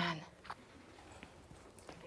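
Quiet room tone after a woman's voice trails off at the very start, with two faint, short clicks of handling or movement, one about half a second in and one near the end.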